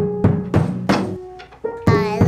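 A wooden stick striking an open upright piano in a quick series of thunks, about three a second, over ringing piano tones. A child's singing voice comes in at the very end.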